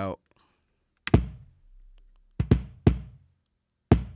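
Kick drum sample played back with its gate bypassed: several hits in an uneven pattern, each leaving a long low boom that rings on. This is the overlong tail that the gate is meant to cut to a snap.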